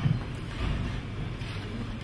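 Steady low room rumble and faint hiss picked up by a podium microphone in a pause between spoken phrases.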